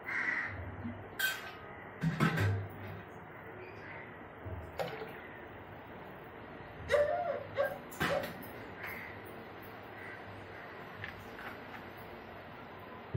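Water being poured into a steel bowl of soaking rice and dal, with scattered clinks of steel and splashes, the loudest cluster about seven to eight seconds in.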